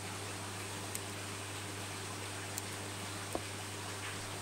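Steady background hiss with a low hum, broken by a few faint ticks as small scissors snip around the base of a leather coral, one tick with a small knock a little past three seconds in.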